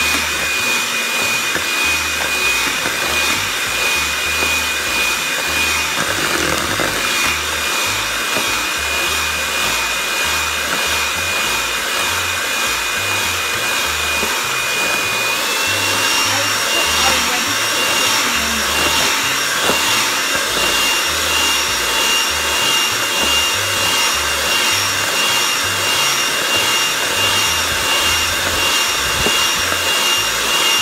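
Electric hand mixer running steadily with a high motor whine as its beaters cream butter and sugar in a plastic bowl. The whine steps up slightly in pitch about halfway through.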